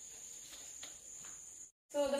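Chalk writing on a blackboard: faint taps and scratches of the chalk stick against the board, a few scattered knocks. The sound cuts off suddenly near the end.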